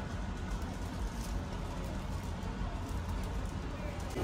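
Supermarket ambience: a steady low rumble with a faint haze of distant voices.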